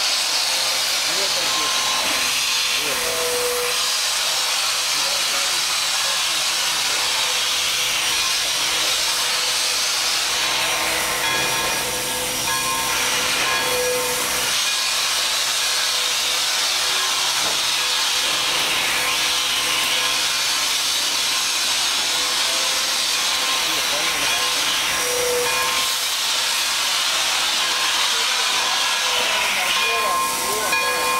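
Steady hiss of steam venting from Pere Marquette 1225, a Lima-built 2-8-4 Berkshire steam locomotive, at rest with steam escaping from low on the engine by the cylinders.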